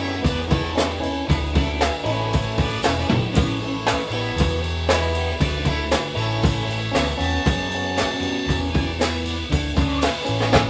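Live rock band playing an instrumental passage between vocal lines: guitars and bass notes over a drum kit keeping a steady beat.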